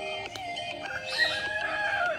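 A rooster crowing once, a single long call starting about a second in and dropping away at the end, over steady background music.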